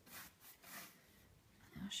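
A paintbrush rubbing a watered-down paint wash over a painted pine cabinet: a couple of faint brush strokes in the first second, then a pause, with a spoken word at the very end.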